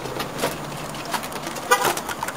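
Outdoor traffic noise with a few clicks and a brief car horn toot near the end.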